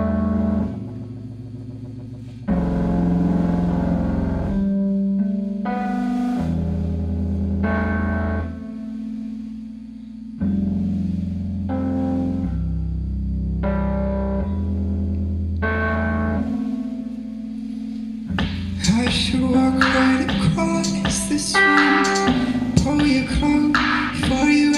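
A rock band playing live without vocals: held electric guitar chords through effects over bass notes that change every couple of seconds. Near the end the drums and cymbals come in with the full band, louder and brighter.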